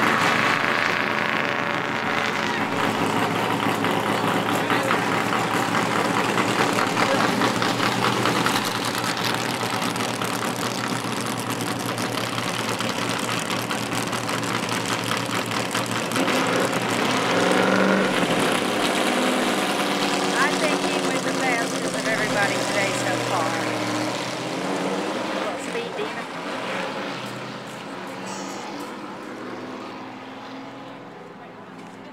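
NASCAR stock car V8 engines running loudly on pit road, their pitch rising and falling as cars move. The sound grows quieter over the last few seconds as a car comes to a stop.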